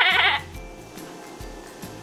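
A woman's voice imitating a sheep's bleat, one quavering "mäh" lasting under half a second at the start, followed by background music.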